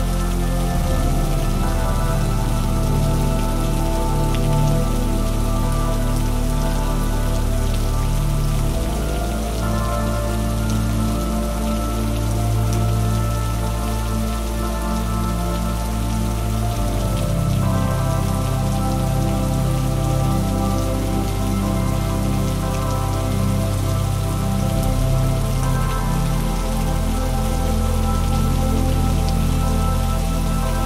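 Steady rain falling, mixed with slow music of sustained chords that change every eight seconds or so.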